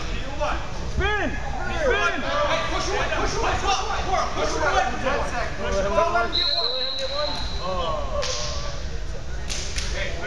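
Busy gym hall with shoes squeaking on the floor and mats amid background voices, and a short, steady whistle blast about six seconds in.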